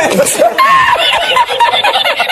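A man laughing hard in quick repeated bursts: the audio of the Spanish laughing-man meme clip.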